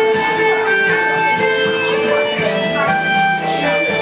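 Karaoke backing track playing an instrumental passage, with a guitar-like melody line of held notes over a full band accompaniment.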